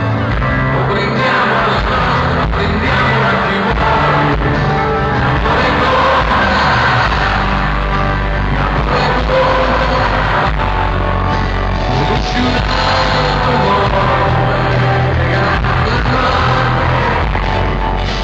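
Live rock band playing with a singing voice, heard from among the concert audience.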